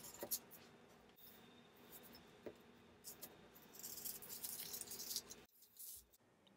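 Scissors cutting thin plastic lamination film, faint: a few soft snips, then a longer stretch of film rustling about four to five seconds in.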